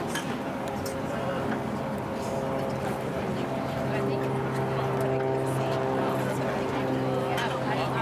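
A steady motor drone holding one constant pitch, fainter at first and louder from about halfway through, under indistinct background voices.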